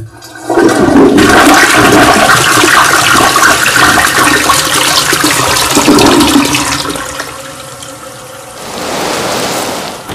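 Toilet flushing: a loud rush of water that dies down about seven seconds in, then swells again more softly near the end.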